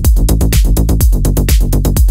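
Melodic house and techno music from a continuous DJ mix: a steady four-on-the-floor kick drum at about two beats a second under fast ticking hi-hats and synth layers.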